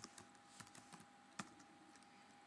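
Faint typing on a computer keyboard: a few scattered key clicks, one louder about one and a half seconds in, over a faint steady hum.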